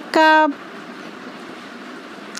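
Steady hiss of a gas stove burner heating a small saucepan of melting sugar, after one short spoken syllable at the start.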